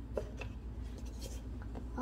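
Faint light taps and scratchy rubbing of a paper cup being handled and lifted off a wooden floor, over a steady low hum.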